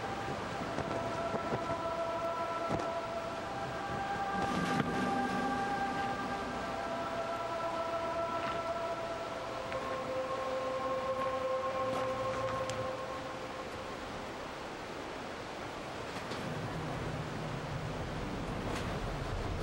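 Dark ambient film-score drone: several steady held tones that move to new pitches every few seconds, over a constant hiss.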